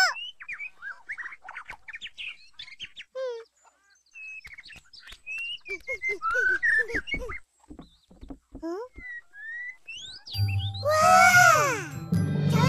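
Cartoon birds chirping and tweeting, a scattered string of short calls and whistles. About ten seconds in, music with a singing voice starts loudly.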